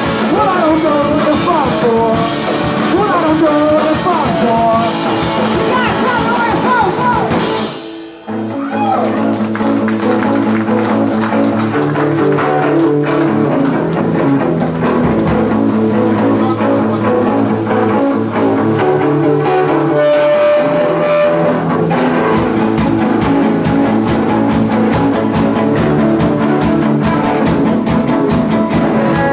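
Live rock band with electric guitars, bass and drum kit playing, with a vocalist singing for the first several seconds. About eight seconds in the band stops briefly, then comes back in with an instrumental guitar riff over the drums.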